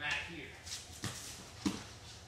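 Bare feet scuffling and gi cloth rustling on foam mats during a standing jiu-jitsu takedown, with a few short knocks; the loudest comes near the end.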